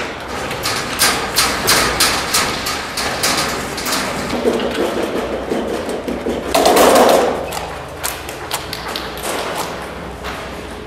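Footsteps of several people running and stepping on a hard floor and a metal staircase: a quick run of sharp knocks and thuds, several a second, thinning out later, with one louder, fuller burst about seven seconds in.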